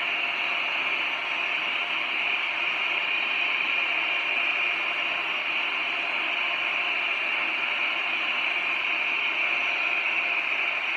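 Oxy-acetylene torch with a number three tip burning in a steady, even hiss against the aluminum fins of a condenser coil, melting the fins away to expose the copper tube beneath.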